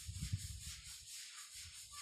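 Faint scratching and scuffing of chalk writing on a blackboard.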